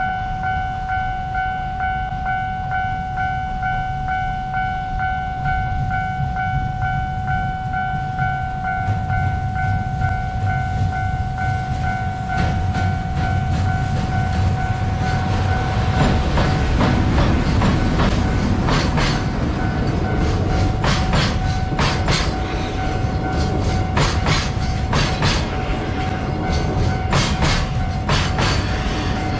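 A level-crossing alarm rings steadily as a freight train hauled by an EF210 electric locomotive approaches slowly and passes. From about halfway the train's rumble builds, and the wheels clack over rail joints in pairs every second or two as the container wagons roll by.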